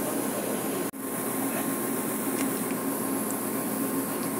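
Steady machinery hum and rush of a ship's deck, unchanging throughout, with a brief dropout about a second in.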